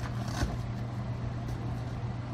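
Velcro straps on a folded fabric roller bag being worked by hand: a brief rasp about half a second in and a fainter one about a second and a half in, over a steady low hum.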